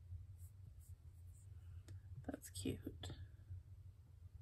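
A few softly whispered words about two seconds in, just after a single faint tap, over a low steady hum.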